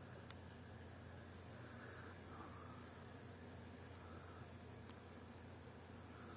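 An insect chirping steadily, a high-pitched pulse about three times a second, over a faint hum of Africanized honeybees working at the hive entrance, which is described as plenty of bee noise.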